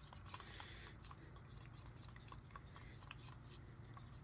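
Faint scraping and light ticking of a wooden craft stick stirring thick acrylic paint and pouring medium in a plastic cup, over a low steady room hum.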